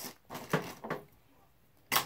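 A wooden craft stick cut through with hand clippers: one sharp snap just before the end, after a faint short sound and a moment of near quiet.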